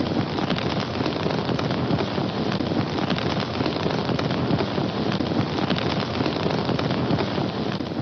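Fire crackling: a steady, dense crackle that begins suddenly and keeps an even level throughout.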